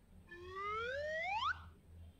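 A cartoon-style comedy sound effect: one pitched tone that rises smoothly in pitch for just over a second, then cuts off abruptly.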